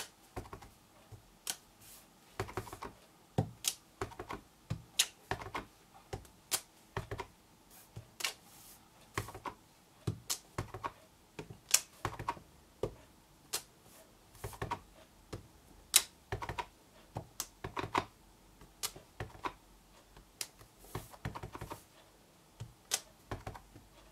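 A rubber stamp on a clear acrylic block being tapped on an ink pad and pressed onto card on a table: a string of irregular light taps and clicks, about one or two a second.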